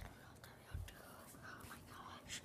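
Faint whispering close to the microphone, with one soft low bump a little under a second in.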